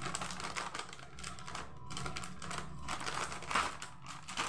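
Scissors cutting open a plastic snack packet: a rapid run of small snips and clicks as the blades work through the packaging.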